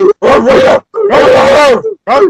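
Men barking like dogs in imitation: three loud barks, the last one drawn out.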